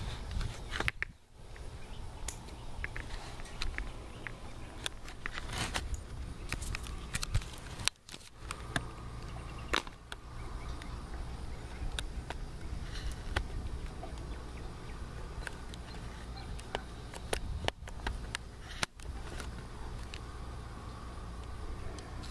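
Handling noise from a handheld camera while a phone and its charging cable are worked: scattered small clicks and rustles over a steady low rumble.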